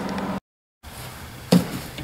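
Electric space heater running with a steady fan hum that cuts off abruptly into a moment of dead silence. Then faint room noise and a single knock from the heater's plastic housing being handled, about one and a half seconds in.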